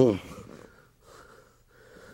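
Faint breathing and the rustle of cloth and bodies shifting on a mat while two men grapple with an arm lock applied, after one loud spoken word at the start.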